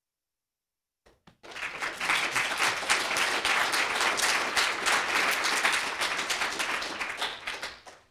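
Audience applauding: a few single claps about a second in, then steady applause from a roomful of people that dies away near the end.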